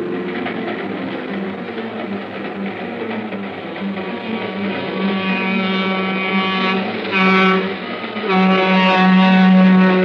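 Radio-drama sound effect of a train on the move, with a flickering low rumble and a whistle blowing twice near the end, the second blast longer.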